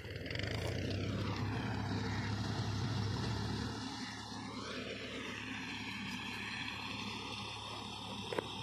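Tractor engine running steadily as it works a wheat harvest, its tone sweeping down and back up through the middle and dropping slightly after about four seconds.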